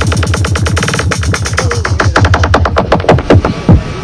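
Dark psytrance played live by a DJ through a sound system: a fast, dense electronic beat of rapid drum and synth hits over deep, falling bass sweeps, with a strong downward sweep near the end.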